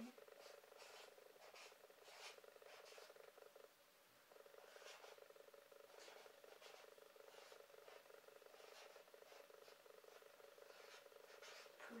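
Faint scratching of a felt-tip marker writing on a sheet of paper, in short irregular strokes, over a faint steady buzz that drops out briefly about four seconds in.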